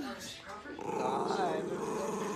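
Small chihuahua-type dog growling, a long rough growl that starts about three-quarters of a second in and keeps going.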